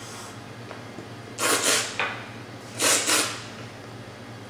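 Two loud slurps of hot black tea sucked noisily from a cup with air, each about half a second long and a second and a half apart: a tea taster's tasting slurp, which sprays the tea across the palate.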